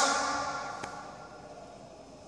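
The tail of a man's speaking voice echoing away in a hard-walled hall, fading out over about a second and a half, then quiet room tone with one faint click near the middle.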